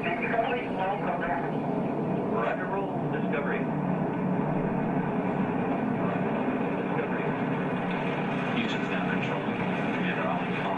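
Recorded launch roar of space shuttle Discovery's rocket engines: a steady, dense rumble played back through loudspeakers into a room, with faint voices over it.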